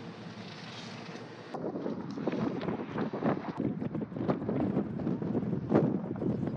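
Wind buffeting the camera microphone outdoors, a gusty low rumble that comes in loudly about a second and a half in. Before it there is a quieter, steady hiss.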